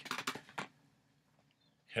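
A man's mouth clicks and lip smacks during a pause in his speech: a quick run of small clicks in the first half-second or so, then quiet room tone until he starts speaking again at the very end.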